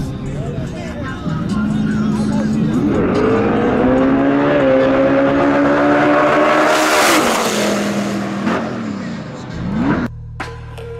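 Two drag-racing cars launching side by side: the engine note holds steady, then climbs hard as they pull away, with a brief step in pitch about halfway through. It peaks loudly as they pass at about seven seconds, then drops in pitch and fades.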